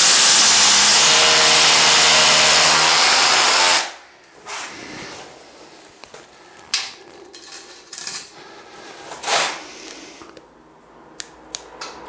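Cordless drill boring a dowel hole through a metal drywall profile into a pumice-block wall, run in plain drilling without hammer action; its steady motor whine stops sharply about four seconds in. Quieter knocks and brief scrapes of the tool and profile follow.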